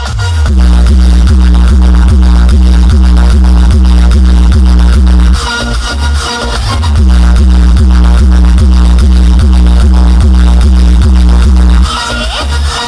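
Electronic dance music with heavy bass played very loud through a truck-mounted DJ speaker system, on a steady beat of about four pulses a second. The bass drops out briefly about halfway through, comes back in, and cuts off suddenly near the end.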